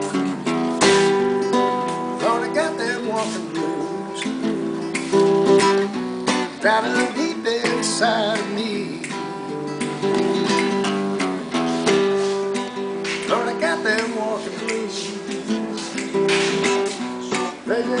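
Acoustic guitar strummed in a steady rhythm of chords, starting suddenly as the instrumental opening of a song. A man's singing voice comes in at the very end.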